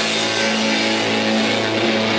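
Live rock band playing: electric guitars hold one steady low note over the drum kit.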